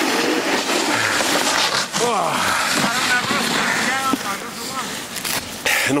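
Snowboards sliding and carving over packed snow, a steady scraping hiss, with a voice calling out for a couple of seconds near the middle.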